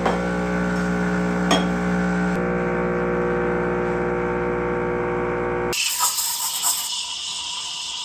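Expobar espresso machine's pump humming steadily while pulling a shot, with a click about one and a half seconds in. The pump cuts off suddenly about three-quarters of the way through and is followed by the hiss of the steam wand steaming milk in a steel pitcher.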